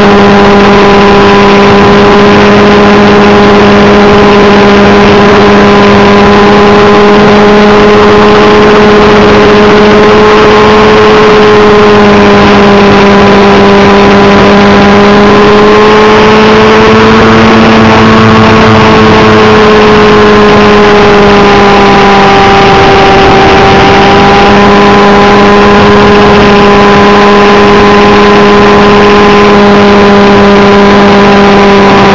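Glow-fuel engine of a Thunder Tiger Raptor RC helicopter running steadily in flight, heard very loud and close from a camera mounted on the helicopter. The pitch rises a little past the middle, then dips briefly before settling back.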